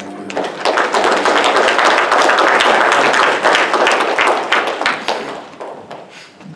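A congregation applauding: many hands clapping at once, swelling about half a second in and dying away near the end.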